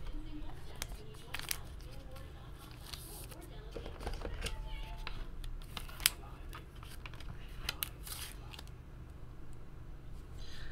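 Trading cards and a hard plastic card holder being handled on a table: scattered light scrapes and clicks, with one sharper click about six seconds in.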